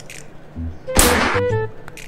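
Monster Energy aluminium drink can cracked open about a second in: a sudden loud pop with a short hiss of escaping gas, over background music with a flute melody.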